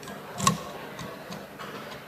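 Metal clicking of a key blank being worked in a lock cylinder during key impressioning: one sharp click with a low knock about half a second in, then a few lighter ticks.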